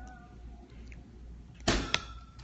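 Handling noise: a brief knock and rustle as something is moved about close to the phone, with a sharp click just after, near the end, over quiet room noise.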